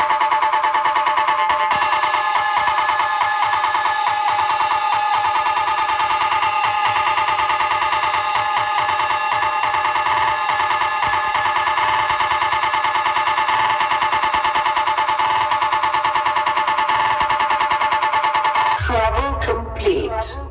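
Electronic soundcheck track running its treble test: a loud, steady cluster of high synth tones pulsing very rapidly, with almost no bass. About a second before the end deep bass comes in and the tones start to glide.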